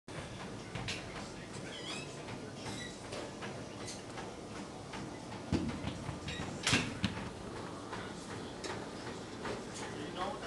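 Gym background noise: a steady hum with scattered clicks and knocks, and two louder thumps a little past the middle.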